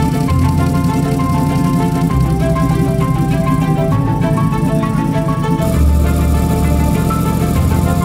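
Background music: a melody of short held notes over a steady bass line, loud and even throughout.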